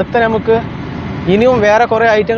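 A man talking, with a steady low rumble from inside the car underneath his voice.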